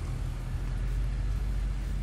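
Steady low rumble of wind buffeting a phone microphone, with a faint hiss over it, swelling a little around the middle.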